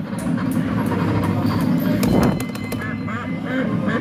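Kiddie ride soundtrack playing from the ride's speaker, a steady run of music and sound. About three seconds in, a series of short pitched calls starts, about three a second.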